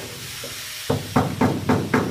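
A chisel struck repeatedly against thick undercoating on a car's steel floor pan: sharp ringing metal strikes about four a second, starting about a second in, over a steady hiss.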